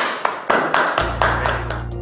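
Hand clapping in applause, about four claps a second, with a low drone of music coming in about halfway through.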